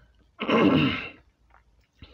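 A man clears his throat with one short, loud cough, lasting under a second.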